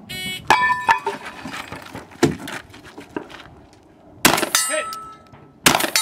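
A shot-timer start beep, then two metallic clangs as a steel target is whacked with a chunk of wood, a few lighter knocks, and two loud gunshots about four and five and a half seconds in. Each shot is followed by the ring of a hit steel target.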